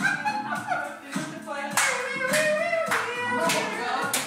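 Singing over music, with sharp rhythmic hand claps about twice a second coming in partway through.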